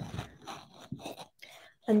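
Faint scratchy rustling of embroidery thread being pulled through fabric stretched in a hoop, in a few short strokes, then a spoken word near the end.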